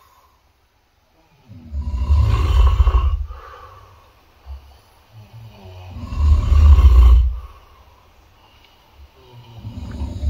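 A person snoring: three loud, deep snores about four seconds apart.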